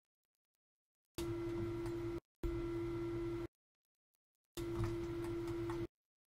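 A steady low tone over a faint hum and hiss, cutting in and out abruptly three times with dead silence between: background noise let through each time a microphone noise gate opens.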